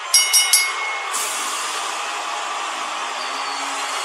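Wrestling ring bell struck several times in quick succession, ringing out to signal the end of the match after the pinfall. About a second in, a steady wash of crowd noise sets in and holds.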